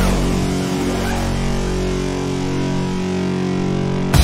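Heavy rock music: a single distorted chord held and ringing out steadily, its deepest bass fading away about two seconds in, then cut off abruptly.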